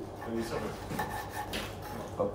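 Soft rubbing and scraping of food being handled on a wooden cutting board, with a few light knocks.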